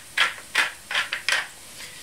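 Wooden pepper mill grinding black pepper: a quick run of short grinding crunches, several a second, that stops about one and a half seconds in.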